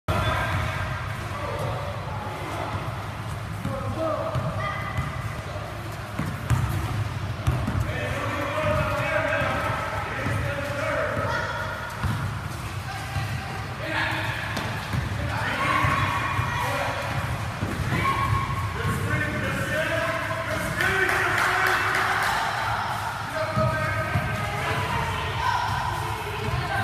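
Basketballs bouncing on a gym floor during a children's game, with overlapping kids' voices and shouts throughout, including a shout of "Go!" about four seconds in.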